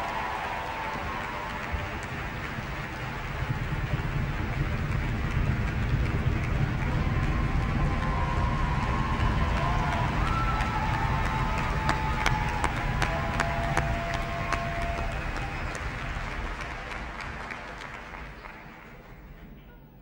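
Large audience applauding: a dense, steady clapping that dies away over the last few seconds.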